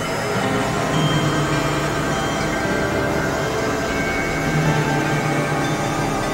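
Experimental synthesizer drone music: many held tones layered over a noisy wash, with a low hum that swells about a second in and again near the end.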